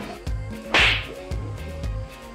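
Background music with a steady beat, and about a second in a single short, loud swish of noise that fades quickly, like an edited transition sound effect.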